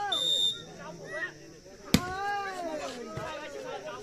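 A short, high referee's whistle blast at the start, then a single sharp smack of a volleyball being hit about two seconds in, followed by players and spectators calling out.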